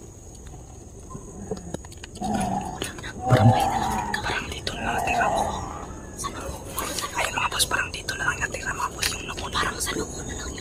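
A person whispering in a hushed voice, with leaves rustling and brushing close by.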